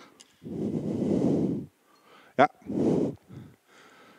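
A man's breath blowing onto a close microphone: one long exhale lasting about a second, then a second shorter one just after a brief spoken 'yeah'.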